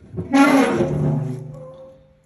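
Steel lid of an Oklahoma Joe's offset smoker being swung open, its hinge giving one loud, pitched creak that fades away over about a second and a half.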